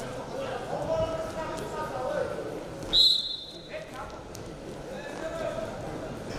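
Shouting voices from the arena over a wrestling bout, with one short, loud whistle blast about three seconds in.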